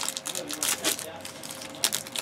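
Foil wrappers of Stadium Club trading-card packs handled on a table, crinkling with scattered light crackles and clicks.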